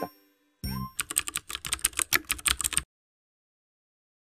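Short closing sound effect: a brief rising tone, then about two seconds of rapid keyboard-typing clicks mixed with bright chiming, cutting off suddenly.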